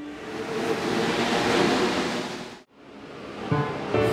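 Whoosh transition sound effect: a rush of noise that swells, cuts off suddenly about two and a half seconds in, then builds again near the end.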